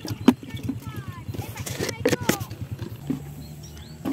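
Small Honda motorcycle engine running with a steady low pulsing, settling into a smoother hum near the end. Birds call over it with short falling whistles, and there is a single sharp knock early on.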